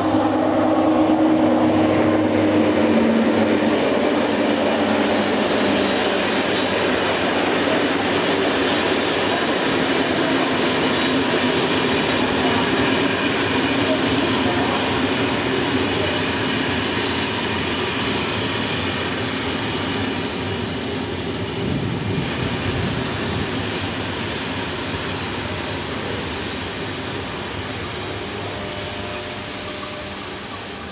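A BB 15000 electric locomotive and its Corail coaches roll past as the train arrives and slows. A falling whine comes from the locomotive at the start, then a steady rumble and hiss of wheels on rail that slowly fades as the coaches go by. A high squeal joins near the end as the train brakes.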